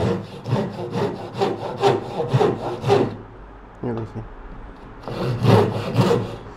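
Japanese hand saw cutting through a block of wood in quick back-and-forth strokes, about three a second, with a brief pause about halfway through before the strokes resume.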